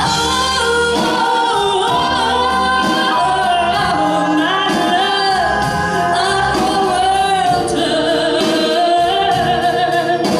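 A woman singing live into a microphone with a band accompanying her, an electric bass among the instruments, her voice holding long, wavering notes.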